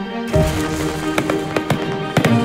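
Fireworks bursting and crackling in many sharp bangs, starting about a third of a second in, over sustained background music.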